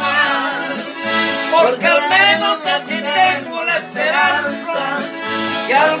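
Piano accordion and acoustic guitar playing a song together over a steady, evenly stepping bass pulse, with men's voices singing long, wavering held notes.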